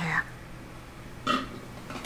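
A person's short burp, just over a second in, while drinking through a straw.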